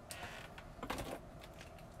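Faint clicks and knocks of small plastic makeup items being handled while rummaging through a drawer, one just after the start and a few together about a second in.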